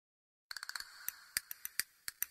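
A series of sharp, short ticks with a bright ring, starting about half a second in. There is a quick flurry of about six, then about five slower, louder single ticks.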